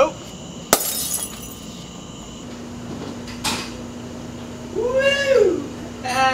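A glass light bulb shattering: one sharp crack with a brief tinkling trail, about a second in. A fainter knock follows a few seconds later, and near the end a voice gives one long rising-and-falling cry.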